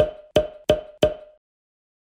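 End-card sound effect: four quick, pitched knocks about a third of a second apart, each ringing briefly, in step with the social-media icons popping onto the screen.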